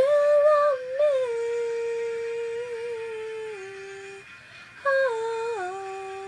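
A girl's voice singing unaccompanied, holding long drawn-out notes that step down in pitch: one phrase of about four seconds, then a second starting near five seconds in. Recorded on a poor microphone.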